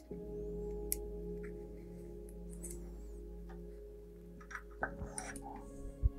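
Quiet background music with soft held notes. Over it come a few light clicks of a metal multitool and plastic shifter parts being handled, most of them near the end.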